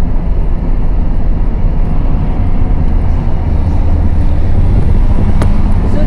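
Steady low rumble of road and engine noise inside a moving car, with one sharp click about five seconds in.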